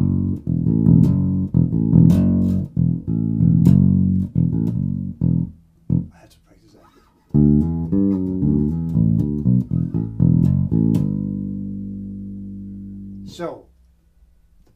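1978 Music Man StingRay electric bass played through an amp: a funky E-minor groove and fill of plucked notes, broken by a short pause about six seconds in. It picks up again and ends on a long held note that slowly rings out.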